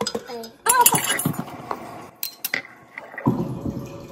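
A metal spoon scooping sugar and clinking against the containers, with two sharp clinks a little after two seconds in. Near the end, milk tea starts pouring from a pitcher into a mug.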